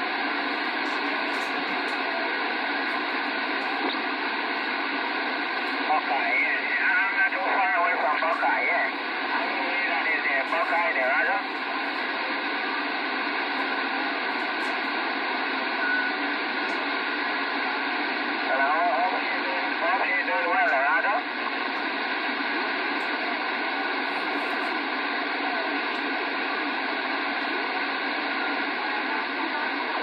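Radio receiver's speaker giving steady static hiss on an open channel, with faint, garbled voices of other stations coming through twice: for about five seconds starting six seconds in, and again briefly around twenty seconds in.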